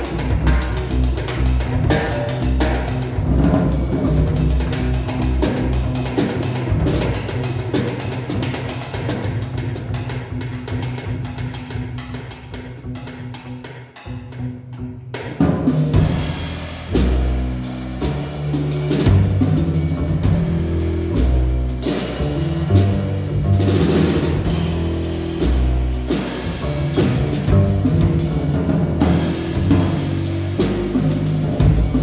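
A live jazz ensemble plays instrumental music: strings, sousaphone, double bass and drum kit. The music thins out and nearly drops away around fourteen seconds, then comes back in with heavy low bass notes and drums.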